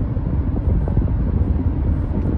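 Car cabin noise: a steady low rumble of road and engine noise heard from inside a moving car.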